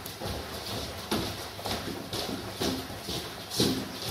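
Footsteps of a group of people walking briskly on a wooden floor, a steady patter of shoe knocks.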